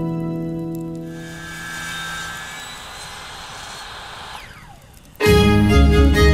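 A power tool's motor whirs quietly and then winds down with a falling pitch. Background music fades out at the start, and loud string music comes in sharply near the end.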